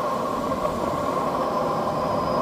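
Steady rush of air past a glider's canopy, heard inside the cockpit, with a steady tone running through it. The glider is flying a little fast at the top of its winch launch.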